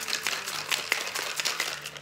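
Ice rattling and clattering inside a metal cocktail shaker being shaken with margarita mix, a fast dense run of clicks.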